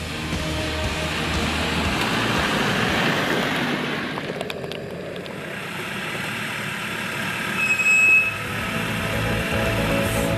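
Land Rover Defender driving slowly over a rough, rocky off-road track, with music under it. A brief high tone stands out about eight seconds in.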